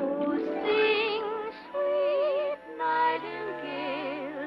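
A soprano voice layered into several harmony parts sings sustained notes with vibrato. The phrases shift pitch every half second to a second, with short breaths between them.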